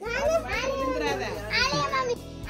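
Young children's voices, high-pitched, chattering as they play.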